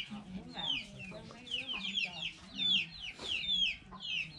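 Chickens: a rapid run of short, high, falling peeps, several a second, over low clucking.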